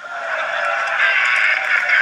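Loud laughter right after a joke's punchline, swelling over the first second and then holding.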